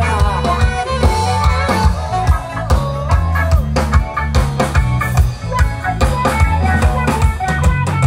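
Live band playing through a stage PA, amplified and loud: a drum kit keeping a steady beat with bass and guitars under a pitched melody line, an instrumental passage with no singing.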